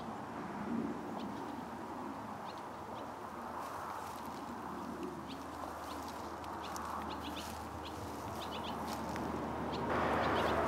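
Steady highway traffic noise, with short bird chirps now and then.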